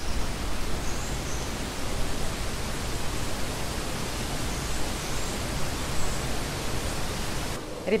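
A steady, even rushing noise with a few faint high chirps over it. It cuts off abruptly shortly before the end.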